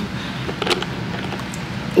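A few soft knocks and clicks of the camera being handled and moved, about half a second to a second in, over a steady low hum.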